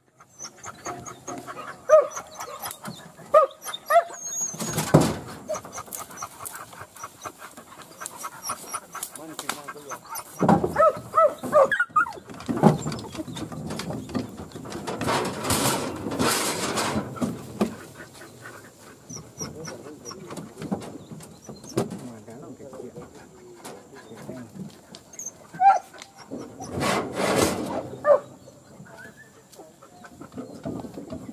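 Hunting dogs barking and whining in short bursts, on and off, with people's voices in the background.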